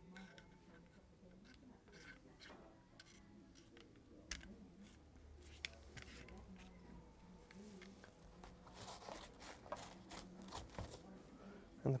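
Faint, scattered metal clicks and light scraping as a SilencerCo Charlie flat cap is threaded by hand onto the shortened Omega 36M suppressor.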